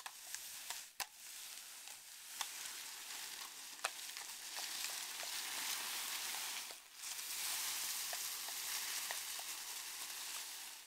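A woven polypropylene builder's bag dragged along tarmac behind a walking horse: a continuous rustling scrape with a few sharp clicks in the first half. It drops out briefly twice, near one second and near seven seconds.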